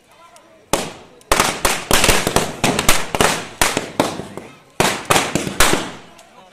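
Firecrackers bursting: a single bang about a second in, then a dense, rapid run of sharp cracks for about four and a half seconds that stops just before the end.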